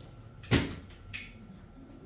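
A single sharp knock about half a second in, followed by a lighter click about a second in, over quiet room tone.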